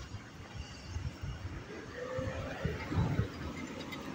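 Quiet outdoor street ambience with soft, irregular low thumps and a brief faint tone about two seconds in.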